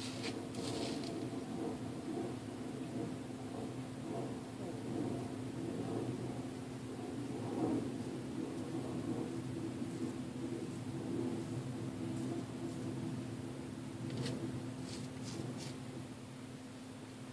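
Kamisori straight razor scraping faintly through about a week's stubble on the neck, over a steady low hum. A few brief, sharper scratchy strokes come near the end.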